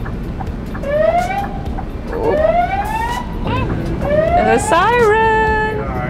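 A fire truck's siren, heard from inside the cab, gives a series of short rising whoops and ends in a wavering tone that holds steady, then cuts off just before the end. The truck's engine rumbles underneath. The siren tells the fire station that the truck is returning.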